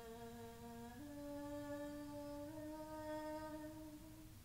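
A faint voice humming a slow wordless melody in long held notes. The pitch steps up about a second in and again a little later, and the last note fades out at the end.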